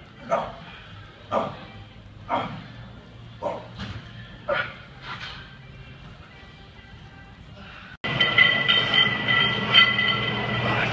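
A man grunting hard with each rep of heavy bent-over barbell rows, about one short grunt a second, weakening over about five seconds as the set ends. About two seconds before the end, loud music cuts in suddenly.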